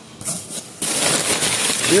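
Crumpled brown kraft packing paper crinkling and rustling as a hand digs through it in a cardboard box, starting about a second in after a near-quiet moment.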